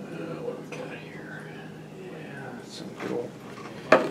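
A man muttering quietly under his breath, then a single sharp click near the end.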